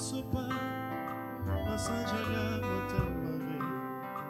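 Live gospel band playing an instrumental passage between sung lines: held keyboard chords with bass guitar and guitar notes, the bass swelling about halfway through.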